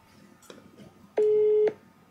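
Telephone busy tone from a smartphone speaker: one steady mid-pitched beep about half a second long, starting about a second in. It is part of a beep-pause pattern repeating about once a second, the Japanese 400 Hz busy tone that sounds when a call has been cut off or the line is unavailable.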